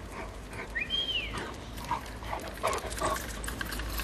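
A dog giving one short, high whine that rises and then falls, about a second in, over a low steady background rumble.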